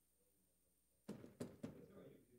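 Near silence, then about a second in three quick thumps close to a desk microphone, roughly a quarter second apart, as when the microphone is handled or bumped.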